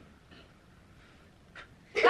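A quiet room with a faint short vocal sound a third of a second in. Near the end comes a brief breathy puff as a birthday candle is blown out, and loud voices break out right at the end.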